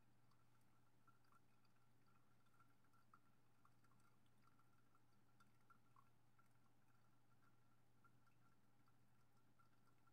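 Near silence: very faint drips and trickle of brewed coffee draining through the filter of a valve-bottom immersion dripper into a glass beaker, with scattered small ticks over a low steady hum.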